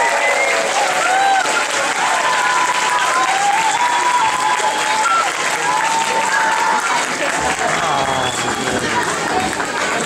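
Audience clapping, with voices calling out and cheering over it.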